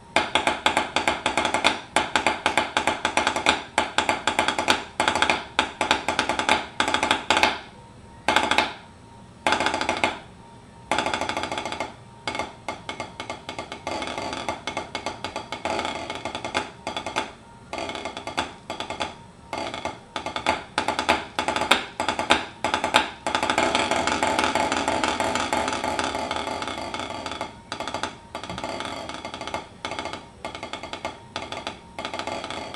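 SD-1 concert drumsticks played on a drum-head practice pad, a concert snare étude: quick runs of crisp strokes and buzzed rolls, broken by several short rests around the first third, with a long continuous roll passage later.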